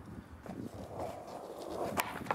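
A skateboard moving on a tiled deck with light knocks and rumble, then a single sharp crack near the end as the tail is popped to send the board into a flip trick.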